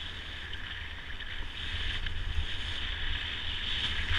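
Wind rumbling on a helmet or body camera's microphone, with the hiss of skis sliding over groomed snow as the skier glides downhill. Both grow louder about halfway through as speed builds.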